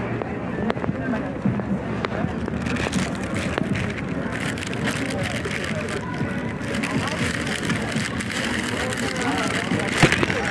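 Indistinct voices of people talking over steady city street noise, the words not clear enough to make out, becoming more distinct near the end.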